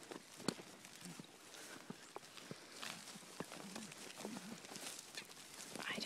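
Goats and a heifer moving about on grass: soft steps and scattered light clicks, with a few faint low grunts in the middle and a call starting to rise right at the end.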